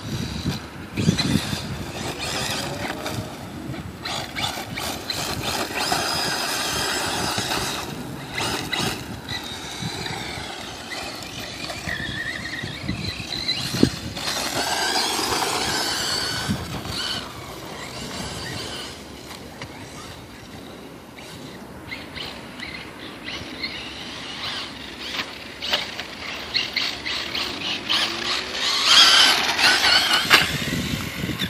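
Ofna Hong Nor Nexx 8 electric RC buggy with a Hobbywing 2250kv brushless motor: a high-pitched motor whine that rises and falls in pitch as the throttle is worked, over tyre noise on dirt. Now and then there is a sharp knock.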